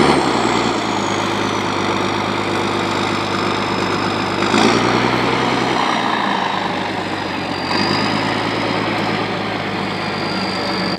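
Wheel loader's diesel engine running under load as it works its bucket into a pile of sand-salt mix, a steady engine sound whose note shifts about halfway through. A thin high whine joins in near the end.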